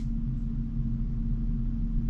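Steady low hum with a low rumble under it: constant room background noise with no sudden events.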